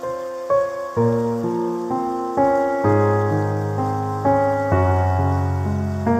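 Slow, gentle solo piano music, notes struck about twice a second and each ringing out and fading, with deeper bass notes joining about a second in. Under it runs a steady hiss of rain.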